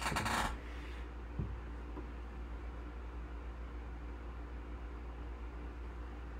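Quiet room tone carrying a steady low electrical hum, with a brief rustle at the very start and a faint click about a second and a half in.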